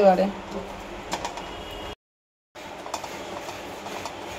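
A tamarind and sugar mixture bubbling steadily in a nonstick pan as it cooks down, with a few soft clicks of a silicone spatula stirring it. The sound cuts out completely for about half a second near the middle.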